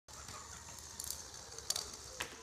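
Sphero robot ball's small geared drive motors whirring faintly as it rolls across a concrete floor, with a few light clicks about a second in and again near the end.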